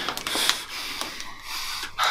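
A winded man breathing hard in short bursts of noisy breaths, with a few faint clicks.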